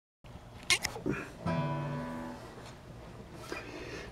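A couple of sharp handling clicks, then a guitar strummed once about a second and a half in, its strings ringing and fading out within about a second.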